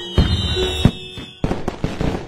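Fireworks bangs over background music: several sharp bursts, spaced out at first and coming quicker together near the end.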